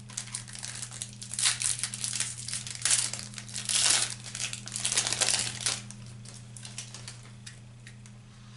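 Foil wrapper of a 2022 Topps Opening Day baseball card pack crinkling and tearing as it is ripped open by hand, in irregular bursts for about five seconds, then quieter near the end. A steady low hum sits underneath.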